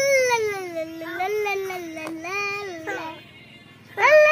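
A young child's voice making long, drawn-out high-pitched vocal sounds, half singing and half wailing: one note slides down at the start and the sounds go on in held notes until they stop a little after three seconds in.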